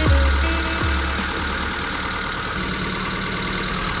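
Electronic music with deep bass notes fading out in the first second, then a steady low mechanical hum.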